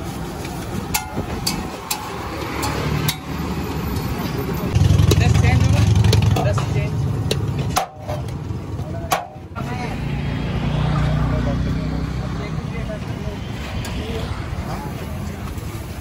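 Street-stall din: a vehicle engine hums low and strong for a couple of seconds from about five seconds in, and again around eleven seconds, over background voices. Sharp clicks of a metal spatula striking a flat iron griddle sound on and off.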